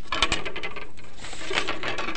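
Plastic overhead-projector transparency sheets being handled and laid on the projector glass: a quick run of clicks and crinkles just after the start, and another rustle about one and a half seconds in.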